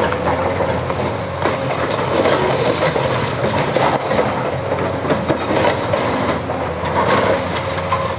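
Caterpillar 329E hydraulic excavator's diesel engine running steadily while its demolition jaw crunches through concrete-block walls, with irregular knocks and clatter of breaking and falling rubble throughout.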